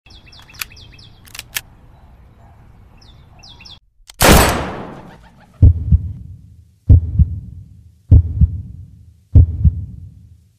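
Birds chirping, then a single loud gunshot about four seconds in that dies away over a second. After it, a slow heartbeat: four low double thumps, about one and a quarter seconds apart.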